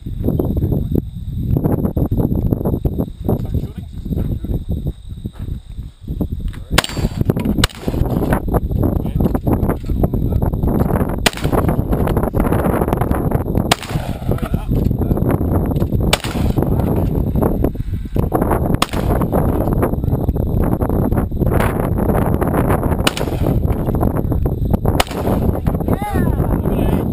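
Shotgun reports at a clay-target range: about eight sharp shots, the first some seven seconds in, then one every two to four seconds, over a steady low wind rumble on the microphone.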